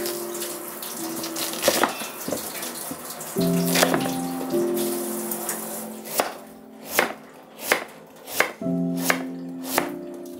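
A kitchen knife cuts through daikon radish onto a wooden cutting board. In the second half the strokes land evenly, about one every 0.7 seconds. A steady hiss runs under the first few seconds, and background music plays throughout.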